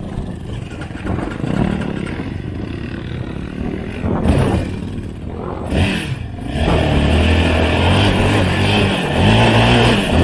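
Sport quad (ATV) engines running close by, revving up and down a few times, then settling into a louder steady run for the last few seconds.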